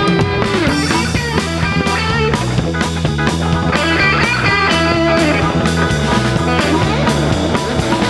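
Live blues band playing: electric guitar with bending notes over a repeating bass line and drum kit.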